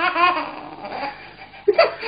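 A man laughing in rapid, repeated pulses that trail off in the first second, then a short sharp laugh near the end.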